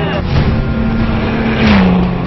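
Engine of a Great Wall rally car driving hard on a dirt stage, under background music, with a loud rush of noise near the end as the car passes.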